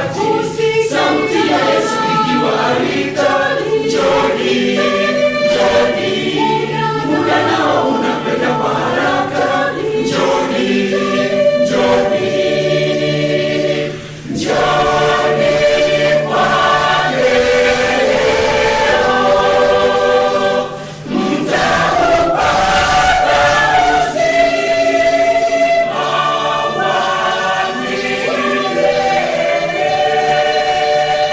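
Large mixed church choir singing a Swahili gospel anthem in full harmony, with two brief breaks between phrases about halfway and two-thirds of the way through.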